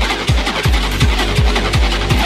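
Fast hard electronic dance music at about 165 beats per minute: a kick drum on every beat, close to three a second, with a rolling bass line between the kicks and hi-hats ticking above.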